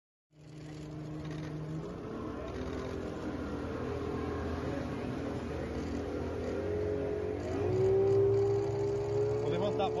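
Boat engine running steadily, heard from on board. About seven and a half seconds in its pitch rises as the boat speeds up, and this is the loudest part.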